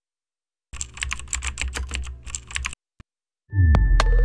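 Computer keyboard typing sound effect: a quick run of key clicks for about two seconds, then one lone click. Near the end a loud hit with a falling tone starts a musical sting.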